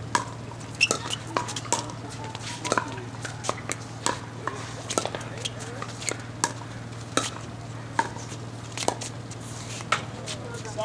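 Pickleball paddles hitting a hard plastic ball in a rally at the net: a quick, irregular run of sharp pocks, several a second.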